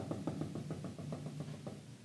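Dry-erase marker dabbing on a whiteboard as a dashed line is drawn: a quick run of short taps, about six a second, stopping shortly before the end.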